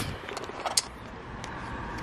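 A phone being handled while eclipse glasses are put over its lens: a few light clicks in the first second, over a low steady background rumble.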